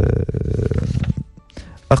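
A man's drawn-out, creaky hesitation sound, held steady and trailing off about a second in. It gives way to a quiet gap with faint background music before speech resumes near the end.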